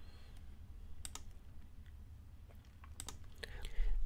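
A few sharp clicks of computer keyboard keys as a card number is typed in: a pair about a second in and a quick cluster near the end, over a faint low hum.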